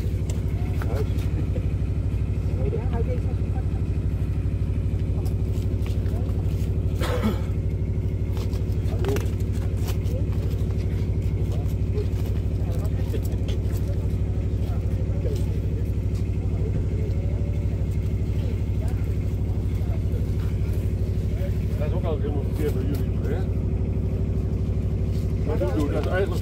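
Steady low drone of an idling engine, running evenly without change, with faint voices in the background and a couple of short knocks.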